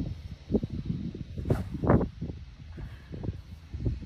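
Golf driver striking a ball off the tee: one sharp click about one and a half seconds in. Wind on the phone microphone makes uneven low rumbling gusts throughout, the loudest just after the strike.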